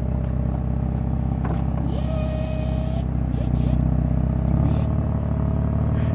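BMW M4 Convertible's retractable-hardtop mechanism lifting the folded roof panels in the trunk, over a steady low mechanical rumble, with a brief hiss about two seconds in.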